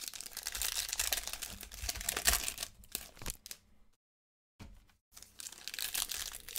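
Trading cards and a foil pack wrapper being handled by hand: dense crinkling and rustling for about three and a half seconds, a brief pause, then crinkling again near the end as a foil pack starts to be opened.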